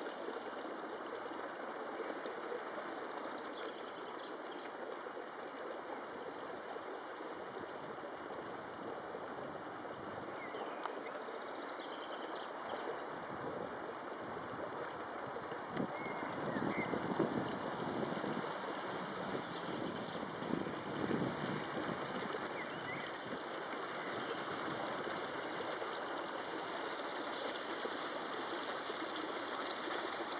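Steady outdoor background noise, an even hiss without a clear source, a little louder for a few seconds past the middle.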